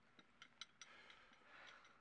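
A few faint, light clinks and clicks of tableware as a plate, dish and wine bottle are picked up from a table, over quiet room tone.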